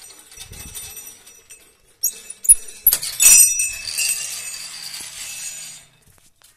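Hanging metal temple bell struck several times from about two seconds in, the loudest stroke near the middle, then ringing on in several steady high tones until the sound cuts off near the end.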